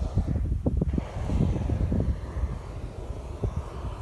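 Gusty wind buffeting the microphone: a low, uneven rumble with irregular thumps.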